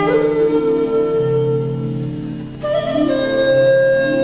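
Chinese bamboo flute (dizi) playing a slow melody: a long held note that slowly fades, then a new, higher note comes in about two and a half seconds in, bends down a little and is held. A lower accompaniment sustains underneath.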